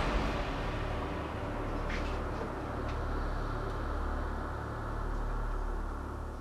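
A low, steady drone with a faint hiss over it, and two soft brief sounds about two and three seconds in.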